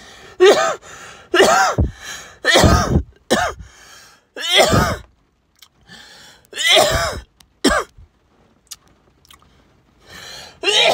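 A man coughing hard, about seven harsh coughs and hacks over eight seconds, then stopping. It is throat irritation from a THCA vape hit he has just inhaled.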